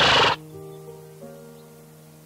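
A short horse snort right at the start, followed by soft background music with a few held notes.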